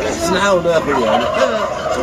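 Domestic fowl calling: a quick, wavering run of gobbling notes.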